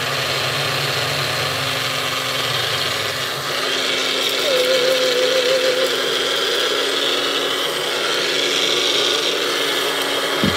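Magic Bullet blender motor running continuously, grinding rolled oats into flour. About three and a half seconds in its sound turns higher and a little louder as the blender is tipped and shaken.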